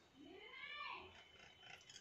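Near silence with one faint, distant animal call that rises and then falls in pitch, a little under a second long.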